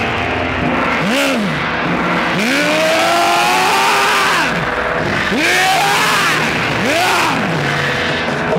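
Dramatic sound effects over loudspeakers accompanying a staged fight: swooping tones that rise and fall about once a second, with one long held swoop in the middle, over a steady drone.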